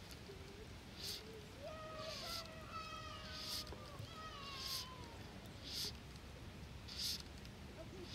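Fly line being stripped in by hand in short pulls, a soft hiss about once every second. A faint, drawn-out call that slowly falls in pitch sounds behind it from about two seconds in to past the middle.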